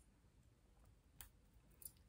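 Near silence, with two faint metallic clicks in the second second as a tennis bracelet is fastened on a wrist among other bracelets.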